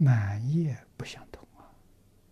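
Speech only: an elderly man's voice says a short phrase in Mandarin, followed about a second in by a few short mouth clicks.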